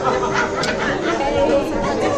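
Several voices talking over one another in a large room: the chatter of guests at a table.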